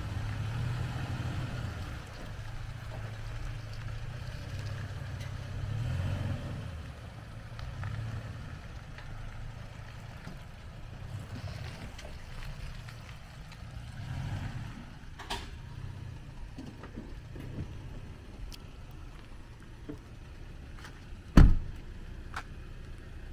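Toyota Tacoma pickup's engine running at low speed while it manoeuvres a boat trailer into a driveway, a steady low rumble rising and falling a little. A single loud thump near the end.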